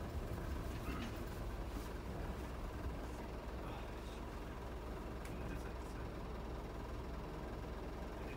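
Steady low rumble of the DMV's diesel engine running, heard from inside the cabin.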